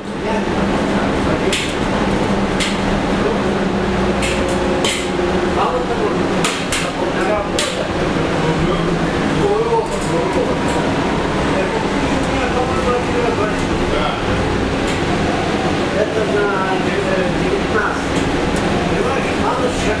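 Cabin sound of a New Flyer XN40 Xcelsior CNG city bus: its Cummins ISL-G natural-gas engine gives a steady drone, mixed with sharp clicks and rattles from the interior, many of them in the first half.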